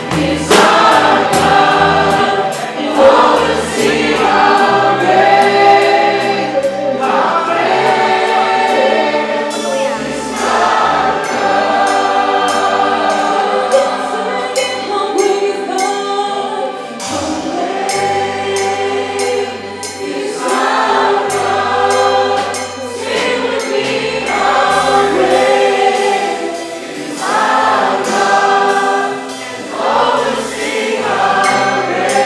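A worship song: many voices singing together in a choir-like mass with a live band of drum kit and hand drums. Drum and cymbal strokes are strongest over the first ten seconds or so, after which the accompaniment thins and the singing carries on.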